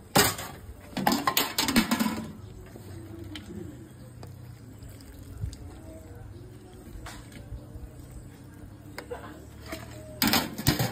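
Metal ladle clattering against a stainless-steel soup pot in the first two seconds, then quieter scooping and broth poured from the ladle into a ceramic bowl of noodles, over a steady low hum.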